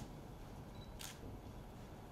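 Press photographers' camera shutters clicking at a photo call: single shutter clicks, one at the start and another about a second later, over a low room hum.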